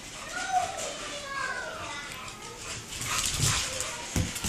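A dog whimpering in a few short whines that rise and fall in pitch, followed near the end by louder rustling and low thumps.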